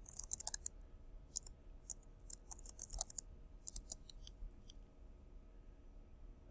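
Computer keyboard keystrokes as a username and password are typed: faint, irregular quick clicks, mostly in the first four seconds.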